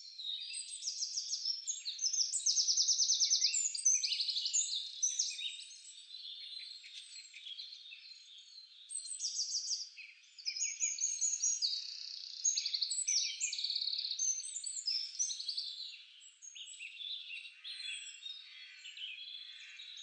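A chorus of many small birds chirping and trilling at once, all high-pitched, with rapid trills and quick falling notes overlapping. It swells and fades, loudest a couple of seconds in and again around nine to ten seconds.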